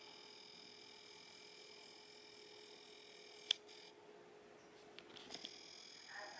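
Near silence: room tone with a faint, steady, high electronic whine. One sharp click comes a little past the middle, and a few soft clicks come near the end.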